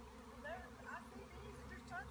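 Faint buzzing of honeybees flying around a swarming hive.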